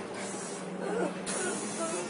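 Steady hum and hiss inside a city bus, with a brighter hiss setting in a little past halfway and brief faint voices in the middle.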